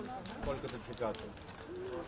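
Indistinct voices of people talking at moderate level, with no music playing.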